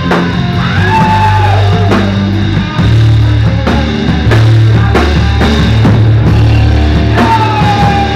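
Live rock band playing loudly: electric bass holding low notes, a drum kit keeping a steady beat, and electric guitar. A high note slides down near the end.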